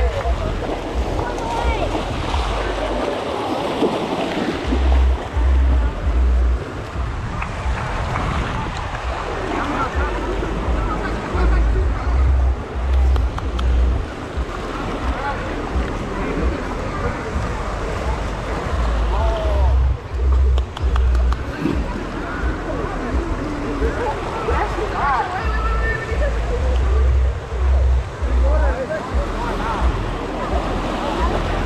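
Shallow surf washing around the wader, with gusting wind buffeting the microphone and a crowd of onlookers talking indistinctly in the background.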